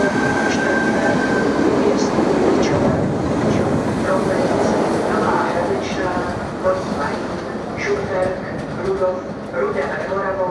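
ČD Class 471 CityElefant double-deck electric multiple unit running past close by as it pulls out of the station, with wheel-on-rail and running-gear noise and a steady high whine over the first second or so. The noise eases after about four seconds as the train draws away.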